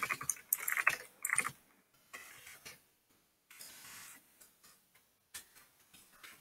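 Computer keyboard typing: quick runs of key clicks in the first second and a half, then sparser taps.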